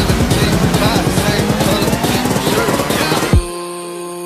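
Background music with a fast, dense beat. A rising sweep builds over the second half and ends in a loud hit near the end, after which the beat drops out and only quieter held tones remain.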